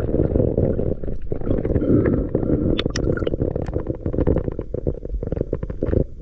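Underwater sound from a camera housing as a freediver swims: a steady, muffled low rumble of water moving past the housing, with scattered small clicks and ticks.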